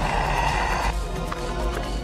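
Film soundtrack music, with a harsh, noisy cry-like sound effect lasting the first second.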